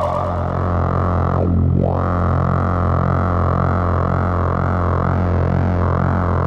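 Analog VCO droning through a Polivoks voltage-controlled filter: a steady, buzzy low note with a resonant peak. About one and a half seconds in, the filter cutoff is swept quickly down and back up.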